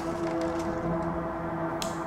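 A steady low humming drone of a few held tones under a hiss, with one sharp click shortly before the end.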